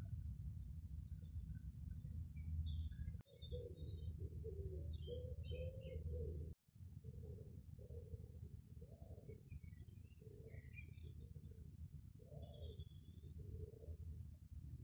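Small birds chirping and twittering faintly in short high notes, joined by lower repeated notes from about three seconds in, over a steady low rumble. The sound cuts out briefly twice.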